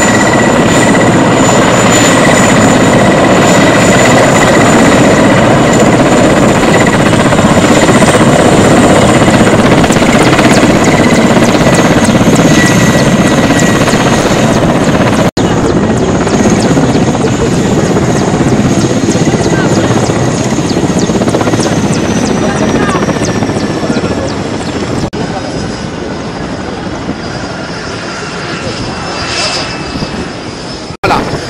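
Mil Mi-8-family military helicopter landing: loud rotor and turbine noise with a steady high whine for about fifteen seconds. After a short break the whine carries on more quietly and drops in pitch as the engines wind down, with voices of people nearby under it.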